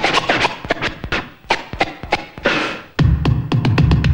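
Vinyl record being cut and scratched on a Technics turntable: a string of short, sharp stabs and pitch sweeps. About three seconds in, a loud bass-heavy beat starts playing.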